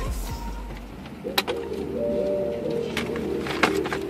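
Bass-heavy music fades out in the first second, then a few sharp plastic clicks from a car's shifter-surround trim panel being handled and fitted, over a faint steady tone.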